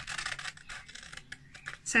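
Scissors cutting through a sheet of paper: a run of short, crisp snips and crackles of the paper as the blades close.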